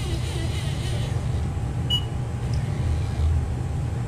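Steady low hum and rumble of a Haas ST-20Y CNC lathe at rest, with one short high beep about two seconds in.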